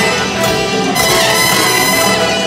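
A jazz big band playing live, the brass section prominent over the rhythm section.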